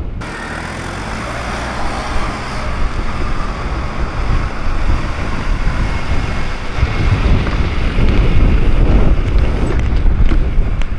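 Street traffic: vehicle engines and tyres going by on the road, with wind buffeting the microphone. The sound grows louder over the last few seconds as something comes closer.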